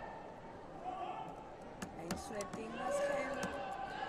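A series of sharp slaps of bare feet striking foam taekwondo competition mats as the fighters bounce and step, over voices in a large hall.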